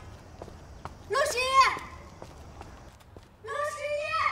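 A young woman shouting a name twice in long, high-pitched calls, one about a second in and another near the end, with faint footsteps in between.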